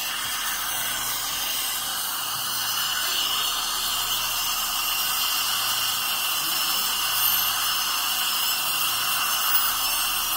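Dental drill whining steadily as it cuts decay out of a tooth, over the hiss of a suction tube in the mouth.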